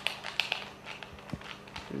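A dog moving about on the floor as it rolls over: a few light taps and scuffs of its claws and body, with a faint steady hum underneath.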